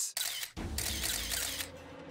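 Camera shutter sound effects: a dense burst of paparazzi cameras snapping, starting about half a second in and fading near the end.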